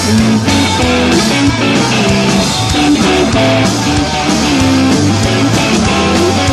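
Live rock band playing an instrumental break with no singing: electric guitars over bass guitar and a steady drum beat, loud and continuous.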